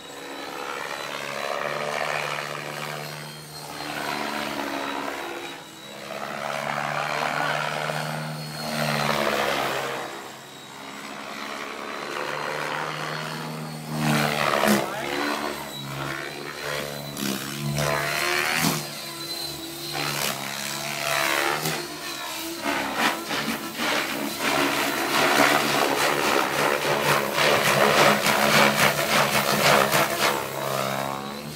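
Radio-controlled 700-size helicopter (KDS Innova 700) flying aerobatics: its motor and main rotor blades hum steadily, swelling and fading every couple of seconds as it passes. From about halfway through the rotor sound turns harder and choppier with rapid pulses during harder manoeuvres, growing loudest near the end.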